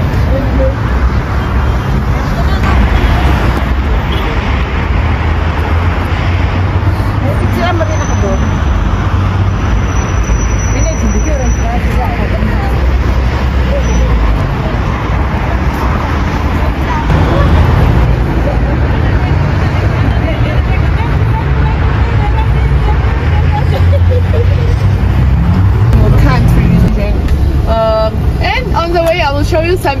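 Steady city street noise: traffic running by with a heavy low rumble, and voices of people talking. A man's voice starts speaking clearly near the end.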